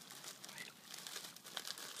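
Thin clear plastic bag of grain crinkling faintly as hands handle it and work open its twisted neck.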